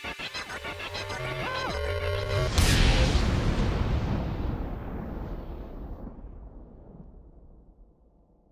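Intro sting: a short rhythmic musical build-up, then a loud explosion-like boom about two and a half seconds in that slowly dies away over the next five seconds.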